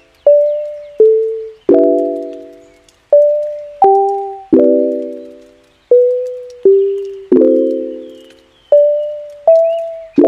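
Outro music: a slow run of piano-like keyboard chords and single notes, each struck sharply and left to die away, about one or two a second.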